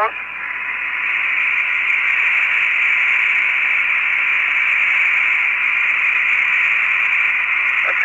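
Steady hiss of an open Apollo air-to-ground radio channel carrying no speech. It swells during the first second and then holds steady, and it sounds narrow and band-limited like a radio link.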